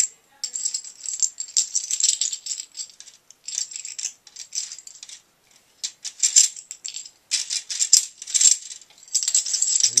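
Plastic Connect Four checkers clicking and clattering in quick flurries as they are grabbed and dropped rapidly into the upright plastic grid, with short pauses about three and five and a half seconds in.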